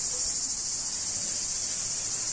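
Cicadas singing in a steady, high-pitched chorus without a break.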